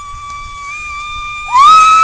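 A girl holding one long, very high sung note. It is soft at first, then swells louder and a little higher about one and a half seconds in.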